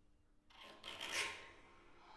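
A rasping scrape inside an upright piano, worked by hand, starting about half a second in, swelling to a peak and fading over about a second.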